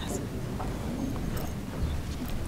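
Footsteps clicking on a stage floor as several people walk across it, over low, indistinct murmuring of voices.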